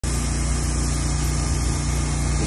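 Small engine of a pressure washer running steadily, with the hiss of the wand spraying cleaning chemical onto concrete.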